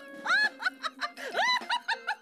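A cartoon character laughing: a quick run of high-pitched giggling syllables, the pitch bending up and down.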